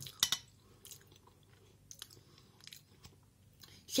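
Quiet close-up chewing of a mouthful of soft rice porridge, with a couple of sharp clicks just after the start and small scattered mouth clicks after that.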